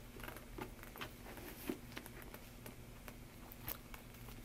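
Faint rustling and small scattered clicks of handling: a leather agenda being pushed into a quilted caviar-leather Chanel medium flap handbag.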